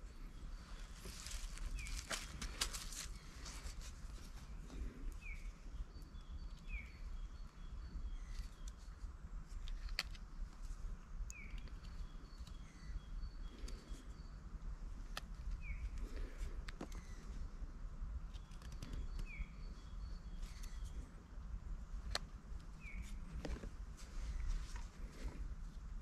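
Small fixed-blade knife whittling a green wooden stick, making irregular short scrapes and clicks. Small birds call in the background with short falling chirps every few seconds and a few runs of high repeated notes.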